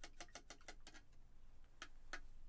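Faint quick clicking of a paintbrush tapping against a water cup, about ten light clicks in the first second and two more near the end.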